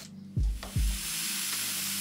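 Angle grinder with a cut-off disc cutting through a stainless steel threaded rod, a steady hiss starting about a third of a second in. Background music with a kick-drum beat plays underneath.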